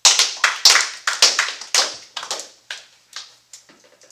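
A small group of people applauding by clapping hands. It starts suddenly and loud, then thins out to a few scattered claps near the end.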